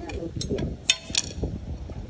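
A man's voice with a few sharp metallic clicks as a steel U-bolt is handled against the trike frame's steel tube and mounting plate.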